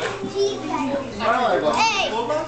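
Young children chattering and playing together, many voices overlapping, with one child's high-pitched voice rising and falling near the end.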